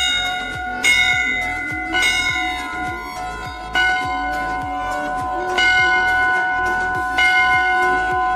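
Large brass temple bell struck by its clapper, swung by hand: five strikes one to two seconds apart, each note ringing on into the next.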